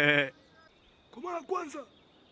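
A man's sing-song, taunting voice: a drawn-out wavering phrase that ends just after the start. About a second later comes a short, higher vocal phrase.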